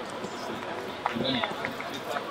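Distant voices calling out across a rugby field during play, over steady outdoor background noise.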